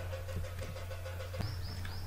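A steady low hum of background noise, with a few faint clicks and three short high chirps near the end.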